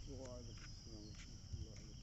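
Crickets chirring in a continuous high-pitched trill.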